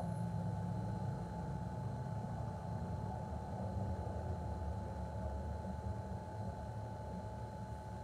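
Steady low background rumble with a faint, steady high tone above it.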